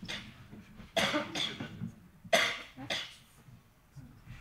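Several short coughs, about four bursts between one and three seconds in.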